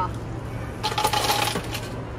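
Ice cubes clattering out of an automatic ice dispenser into a cup held by a robotic barista arm: a quick rattle of many small impacts lasting about a second, starting a little under a second in.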